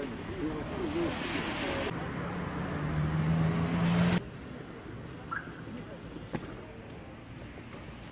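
Indistinct voices, then a vehicle engine running with a steady low hum that grows louder and cuts off abruptly about four seconds in. After it comes a quieter background with a brief click or two.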